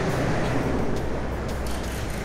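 Steady outdoor background noise: an even hiss with a low hum underneath, easing off slightly near the end.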